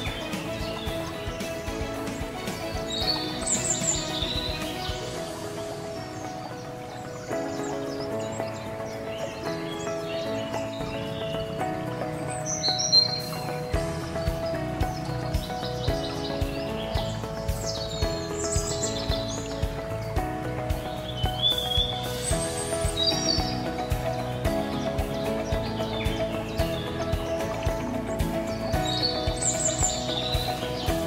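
Background instrumental music with steady held chords, with short bird chirps heard over it every few seconds.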